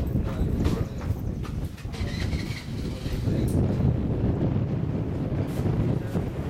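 Wind rumbling steadily on the camera microphone, with a few faint ticks.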